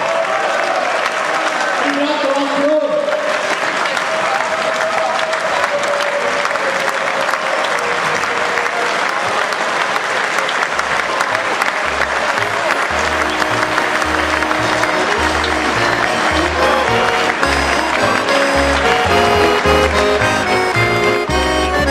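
Audience applauding steadily, with voices over it in the first few seconds. About halfway through, accordion folk music with a regular bass beat comes in under the applause and grows louder.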